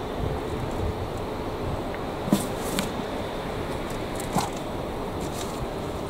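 Gloved hands rummaging through loose potting compost in a metal wheelbarrow, a soft rustling with a few short scrapes or clicks, over a steady background hiss.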